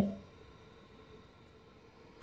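A man's voice trails off at the very start, then near silence: faint room tone.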